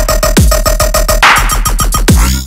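Riddim dubstep playing loud: a chopped, stuttering synth bass over a drum-machine beat, with a falling pitch dive in the bass and a noisy swell in the highs about a second in.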